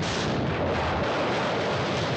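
A loud, steady roaring noise that runs unbroken, with no separate bangs standing out: a cartoon sound effect.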